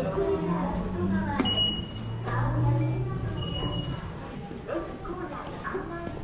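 Two short, high electronic beeps about two seconds apart, the tap signal of IC-card ticket gates at a train station, over background voices.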